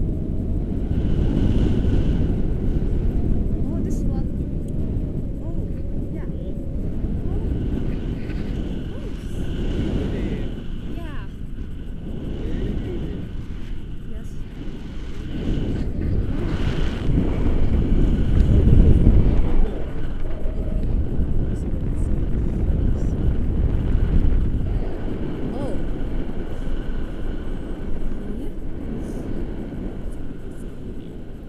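Wind rushing over the microphone of a paraglider in flight, a low rumble that swells and fades, loudest a little past the middle. Faint high steady tones come and go over it.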